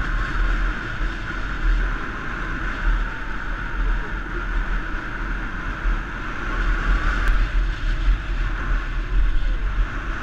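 A motorbike running steadily at road speed, its engine and road noise mixed with wind rumble on the microphone.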